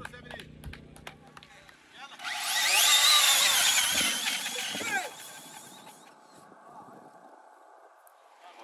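Large-scale RC car accelerating flat out up a sand dune: a high motor whine rising in pitch over a hiss of spraying sand, starting about two seconds in and lasting about three seconds before fading away.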